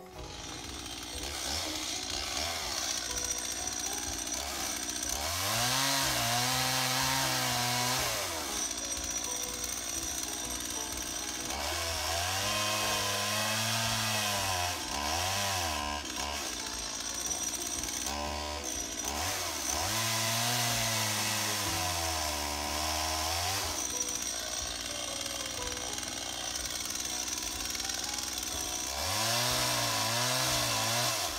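Chainsaw running throughout, revved up hard four times for a few seconds each and dropping back in between, as it cuts overhead branches.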